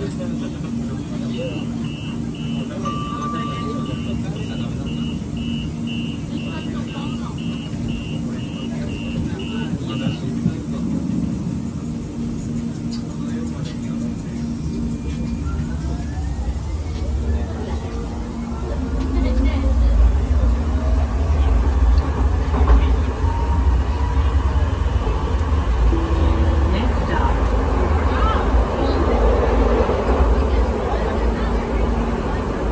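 Inside a Siemens S200 light rail car: an evenly repeating electronic beep sounds for about the first ten seconds while the car stands at the platform. The train then pulls away: a rising whine from the traction motors as it accelerates, then a louder low running rumble from about two-thirds of the way through.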